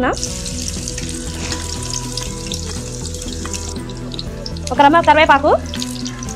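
Chopped onions dropped into hot oil in a metal pan, sizzling as soon as they hit it; the hiss is strongest for the first few seconds and then settles lower. A short burst of voice cuts in near the end.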